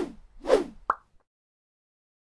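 Logo-sting sound effect: two quick swooshes about half a second apart, then a short pop.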